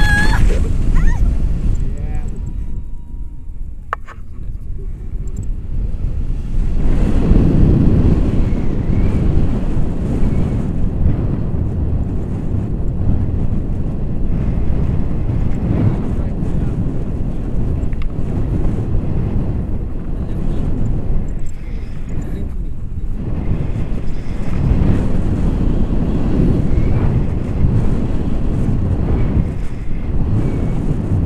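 Wind rushing over the camera microphone in flight on a tandem paraglider: a loud, low, gusting rumble that swells and dips.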